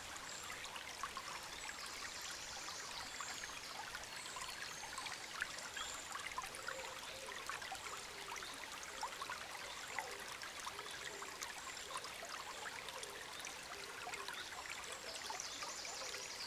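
Shallow forest stream running: a soft, steady trickle of flowing water.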